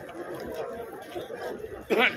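Indistinct chatter from a crowd of people walking together: several voices talking at a distance, with a louder voice breaking in at the very end.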